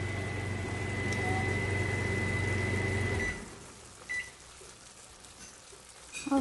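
A kitchen appliance running with a steady hum and a thin high whine, switching off about three seconds in. A short high beep follows a second later.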